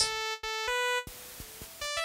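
Sampled Korg MS-20 oscillator waveforms played as short synth notes: a few bright pitched notes, then a brief stretch of the noise oscillator, then a quick run of rising notes near the end as different oscillators are selected.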